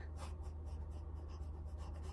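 Faint, rapid scratchy rustling over a steady low hum.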